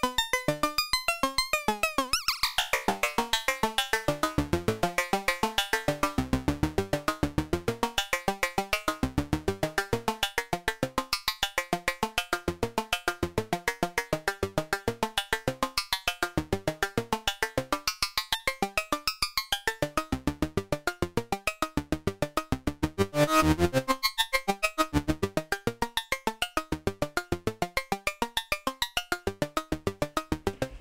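ST Modular Honey Eater analog oscillator (a CEM3340 VCO) playing a fast, even sequence of short synth notes, with frequency modulation on to make percussive hits. The pitches keep shifting, a high tone sweeps downward about two seconds in, and the notes swell louder briefly past the three-quarter mark.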